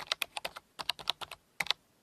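Typing on a computer keyboard: a quick, irregular run of keystrokes with a short pause midway, stopping just before the end, as a desk clerk checks for available rooms.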